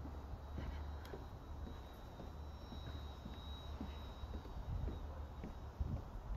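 Footsteps on a footbridge walkway, faint irregular knocks at a walking pace, over a low steady rumble.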